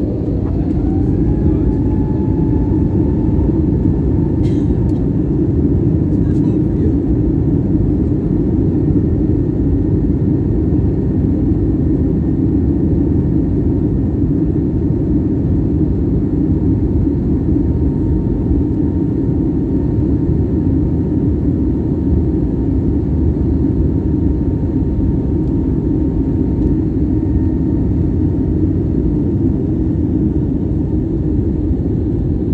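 Jet airliner's engines heard from inside the cabin, spooling up to takeoff thrust with a whine that rises over the first two seconds and then holds. Under it is a loud, steady roar as the plane accelerates down the runway.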